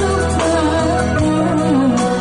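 A woman singing a song into a microphone over instrumental accompaniment, her melody held and bending in pitch.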